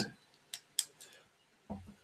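A quiet pause with two faint sharp clicks, about half a second in and just before a second in, and a third tinier one after them. A soft low sound comes near the end, just before speech resumes.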